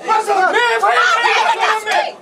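Several people talking over one another in a packed crowd.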